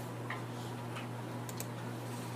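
Quiet room tone: a steady low hum with a few faint, light clicks scattered through it.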